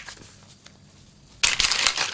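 Metallised plastic anti-static bag crinkling as it is handled, starting about a second and a half in after a quiet stretch, with a single click at the very start.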